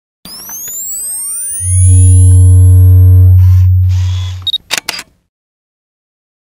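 Electronic intro sound effect: rising sweeping tones, then a loud low hum with steady tones above it, two short hissy swishes, and three or four sharp clicks about five seconds in, after which it stops.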